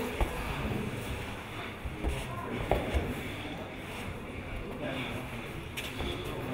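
Indistinct background voices and the general noise of a large gym hall, with a few short soft knocks, about three, as the grapplers shift on the foam mats.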